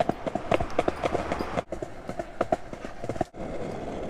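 Fast rolling noise with a quick, irregular run of clicks and clatter over pavement, made while a harnessed Siberian husky pulls its rider along at speed.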